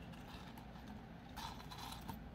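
Faint light clicks and rustle of handling a wire-wrapped jewellery pendant with its small metal chain and jump rings between the fingers, with a short cluster of clicks about one and a half seconds in.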